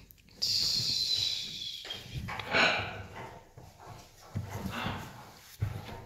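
Hyacinth macaw making vocal sounds while it play-wrestles with a hand: a long high-pitched call that falls slightly, then several shorter bursts, with a few soft knocks.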